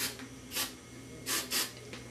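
Aerosol hairspray can spraying in short hissing bursts: one at the start, one about half a second in, and two close together about a second and a half in.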